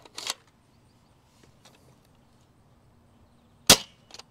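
Adventure Force Nexus Pro spring-powered foam-dart blaster firing one half-length dart: a single sharp, loud crack near the end, with a brief quieter clatter just after the start. The shot clocks a low 82 fps on the chronograph, which the shooter calls not great.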